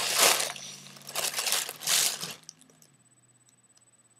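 Helium being breathed in from a foil party balloon held to the mouth: three hissing rushes of gas with the balloon crinkling, the last ending about two and a half seconds in.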